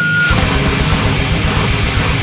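Grindcore band playing live, with distorted guitars over rapid, dense drumming, heard on a raw bootleg tape recording.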